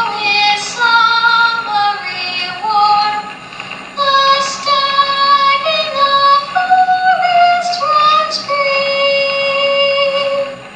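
A solo high voice singing a slow melody in long held notes that step up and down, with a faint accompaniment beneath.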